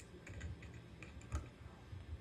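Faint, scattered small clicks and taps with soft low thumps, handling noise in a lull with no music playing; one sharper click comes about a second and a half in.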